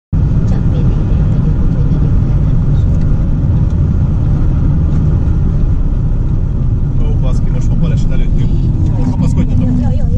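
Car driving at motorway speed, heard from inside the cabin: a loud, steady low rumble of tyre and engine noise. People are talking over it in the last few seconds.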